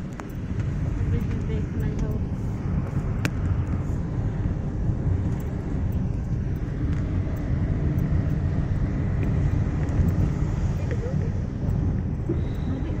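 Steady low rumble of a moving road vehicle heard from inside the cabin, with a few faint clicks and rattles.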